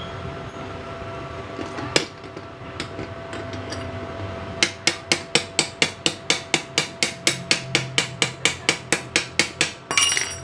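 Rapid, evenly spaced hammer strikes on steel, about four or five a second, starting about halfway through: a chipping hammer knocking slag off a freshly laid arc weld bead. A single knock comes earlier, about two seconds in.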